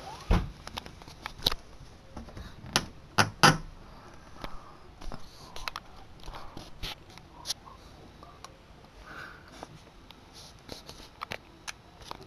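Irregular sharp clicks and knocks, a dozen or more, scattered over a quiet room background; the loudest is a close pair about three and a half seconds in.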